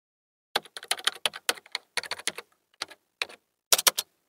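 Computer keyboard typing, an irregular run of sharp key clicks about three to four a second. It starts about half a second in and ends with a quick cluster of clicks.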